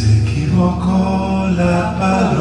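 Men singing a slow song together over acoustic guitar and violin, live on stage. A held instrumental chord gives way to the voices about half a second in.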